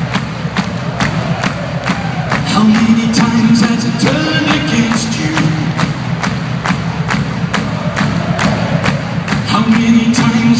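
Live rock band playing an instrumental passage with a steady drum beat, electric guitar, bass and keyboards, loud and distorted as picked up by a phone microphone in an arena.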